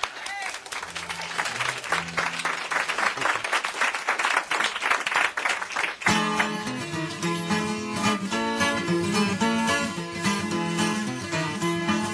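Studio audience applauding for about six seconds, then an acoustic string band with guitars starts playing abruptly.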